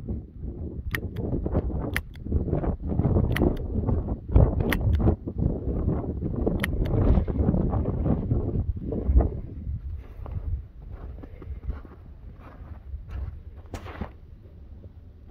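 Wind buffeting the microphone, a rumbling noise that eases off over the last few seconds, with a few faint sharp clicks scattered through it.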